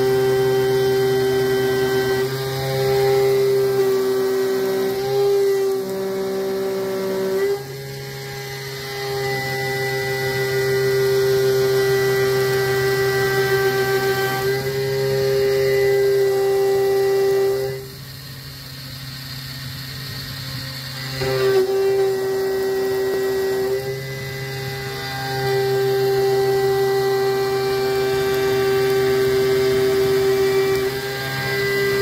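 A Taig CNC mill with a BT30 spindle and 1200 W motor is milling metal with a half-inch three-flute end mill at about 7800 RPM, giving a loud, steady, pitched cutting whine. The tone weakens for a stretch about a quarter of the way in. It drops away for about three seconds past the middle, then returns.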